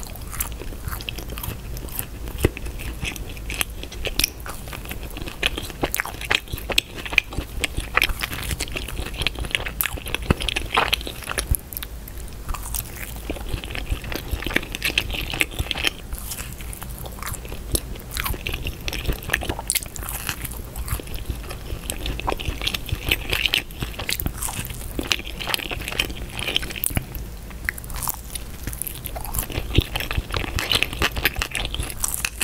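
Close-miked eating sounds of a person biting and chewing pizza: the crust crunches, with a dense run of wet clicks and smacks from the mouth.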